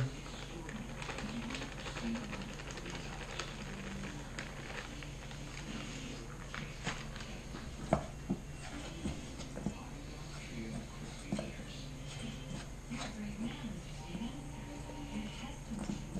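Hands kneading honey-and-powdered-sugar queen candy in a stainless steel bowl, working in more sugar until the mix stops being sticky: soft, scattered knocks and clicks against the bowl, the sharpest about eight seconds in.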